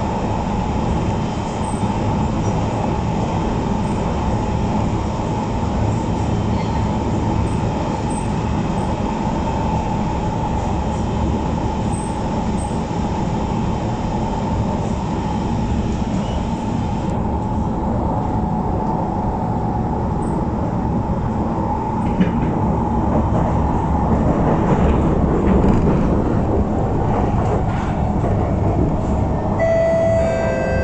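The cabin of a Kawasaki Heavy Industries C151 metro train running at speed on an elevated track. It makes a continuous rumble of wheels on rail with a steady whine above it. The sound grows a little duller after about halfway and a little louder later on.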